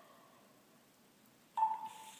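Fluke DTX1800 cable analyzer giving a single short electronic beep about one and a half seconds in, a keypress confirmation as the custom test limit is saved; before it, only faint room tone.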